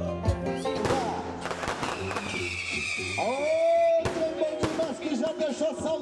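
Fireworks going off with several sharp bangs and a falling whistle, over music. From about halfway a man's voice calls out in a long drawn-out shout over the PA.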